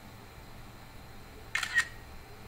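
Two short, sharp clicks about a quarter of a second apart near the end, the second louder, over faint room noise.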